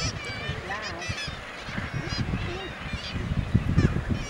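A seabird colony calling: many short, harsh, overlapping calls from birds on the cliff, over a low rumble.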